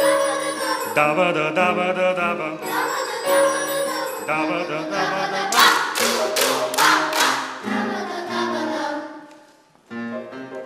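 Boys' choir singing wordless scat syllables ("da da") with piano accompaniment. A little past halfway, about five sharp, bright strikes in quick succession ring over the music. The sound then dies away almost to silence just before the end.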